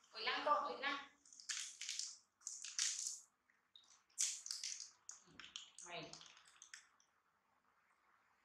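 Quiet human speech in short phrases at the start and again about five to six seconds in, with short, crisp rustling bursts between them.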